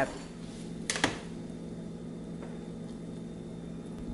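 Pot of water with tomatoes boiling gently on a glass cooktop: a steady low hum, with two quick knocks about a second in.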